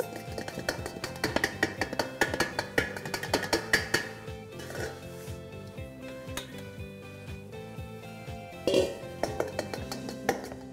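A stainless steel sieve knocking and rattling against a stainless steel mixing bowl as flour is sifted through it, with many quick metallic taps, thickest in the first half, over background music.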